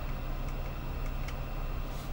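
Steady low hum of running machinery with a few faint ticks.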